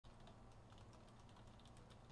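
Faint typing on a computer keyboard: quick, irregular key clicks over a low steady hum.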